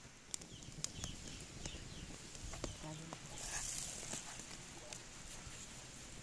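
Faint handling sounds of fresh green onions being trimmed by hand: a few light sharp clicks and a soft rustle of stalks.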